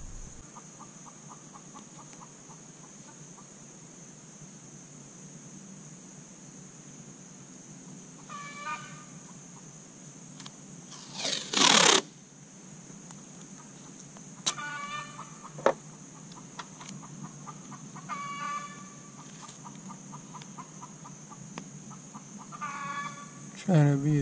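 Automotive masking tape pulled off its roll in one long rip about halfway through, the loudest sound here, with a softer pull just before it. A few short pitched calls come at intervals over a steady high hiss.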